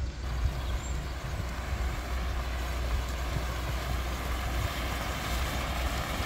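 Cascading fountain with arcing water jets splashing, a steady rush that sets in just after the start, over a steady low rumble.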